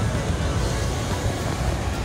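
Wind buffeting the microphone in a steady, uneven low rumble over the wash of breaking ocean surf.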